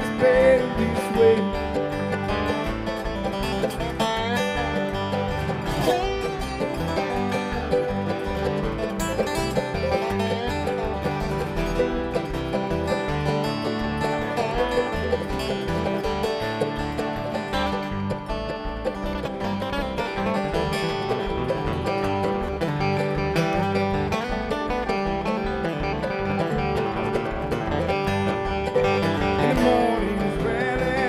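Bluegrass string band playing live, an instrumental passage with banjo, acoustic guitar and dobro (resonator guitar played with a bar) over upright bass.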